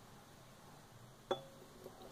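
One light clink of glass on glass with a short ring, about a second and a quarter in, as one glass lab beaker touches another; the rest is quiet.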